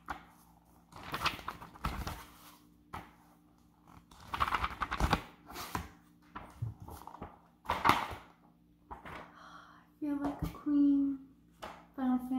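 Paper and cardboard handled in an open cardboard box: several bursts of rustling and scraping as flat cardboard-backed pads are lifted and moved, then a brief voice near the end.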